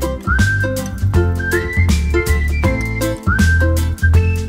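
Upbeat background music: a whistled melody with notes that slide up into place, over a bass line and a steady beat.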